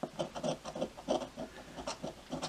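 A coin scraping the latex coating off a scratch-off lottery ticket in short, quick repeated strokes.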